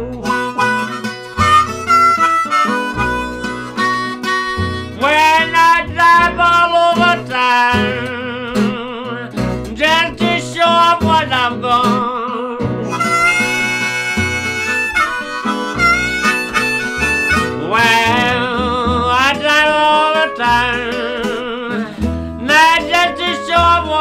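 Blues harmonica solo with bent, warbling notes and a long held chord about halfway through, over two guitars and a plucked upright double bass.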